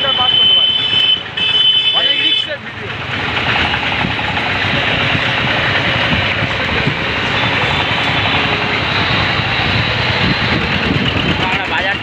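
Street traffic noise heard while moving along a busy market road, with a steady rushing of wind on the microphone. In the first two seconds a high-pitched electronic tone beeps twice, each beep about a second long.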